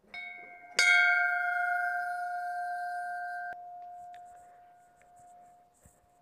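Large brass temple bell struck by its clapper, once lightly and then hard about a second in, ringing with several steady tones. The higher tones stop suddenly about three and a half seconds in while the lowest tone hums on, slowly fading.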